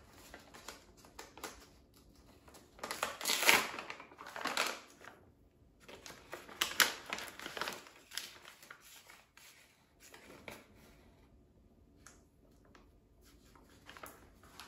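Paper bag crinkling and rustling, with a metal measuring spoon scooping and scraping baking powder, in several short bursts; the loudest come about three to seven seconds in.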